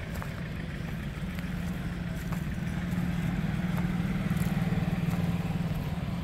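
Aprilia RS 457's parallel-twin engine idling steadily, a low even hum that grows gradually louder over the few seconds.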